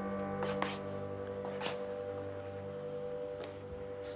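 Background drama underscore music: a sustained held chord slowly fading, with a few brief soft clicks about half a second in and again near the middle.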